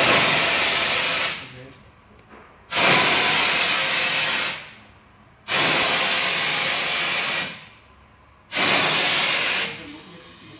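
Handheld LED CO2 jet gun, fed from a gas cylinder, firing four blasts of CO2: each a loud hiss of one to two seconds that starts suddenly and dies away, with short pauses between.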